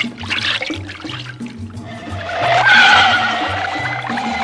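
Cartoon score with a bass line of short repeated low notes. About two seconds in, a swelling whoosh-and-whine sound effect for the boat speeding off rises over it, loudest near three seconds.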